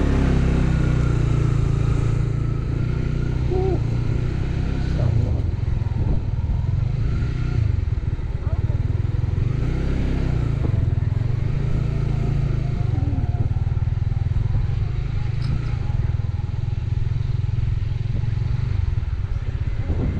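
Honda CB150X's single-cylinder engine running at low speed on an off-road ride across grass, its steady low rumble rising and falling with the throttle.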